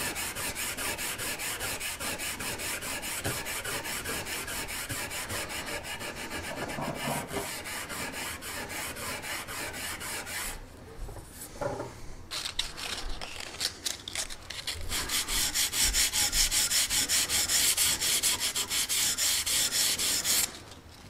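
Green abrasive pad scrubbed back and forth in quick, even strokes over a steel blade, cleaning the residue off a freshly salt-water-etched mark. The strokes pause briefly a little past halfway, then come back harder and louder near the end.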